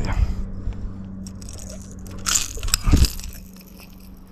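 Pliers and a lure's hooks clicking and scraping as a hook is worked out of a striped bass's mouth, with a few louder scuffs about two and three seconds in, over a steady low hum.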